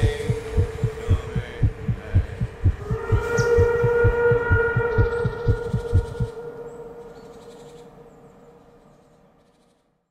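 Trailer sound design: a fast, low thudding pulse of about three to four beats a second under a sustained droning tone. The pulse stops abruptly about six seconds in, and the drone fades away to silence.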